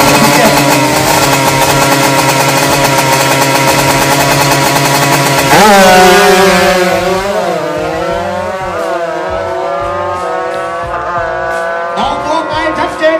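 Drag-racing motorcycle engine held at high revs on the start line, then launching hard about five and a half seconds in, climbing in pitch through several quick gear changes and fading as the bike pulls away down the strip.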